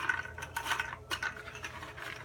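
Light clicks and scraping as nesting tubes are handled and pushed into a wooden mason bee house, rubbing against each other and the wood; several short clicks come through.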